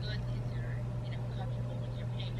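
Faint voice of the person on the other end of a phone call, coming through the phone's earpiece, over a steady low hum.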